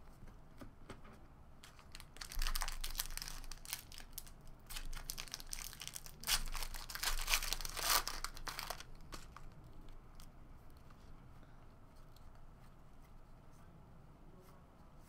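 Foil wrapper of a trading-card pack being torn open and crinkled in the hands, in two noisy, crackling stretches, the second and louder one about six to eight seconds in.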